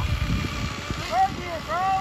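Small nitro RC engine (a 3.3 in a Traxxas Nitro Sport) buzzing faintly in the distance as the car runs away, under a low rumble of wind on the microphone. Brief voice sounds come in after about a second.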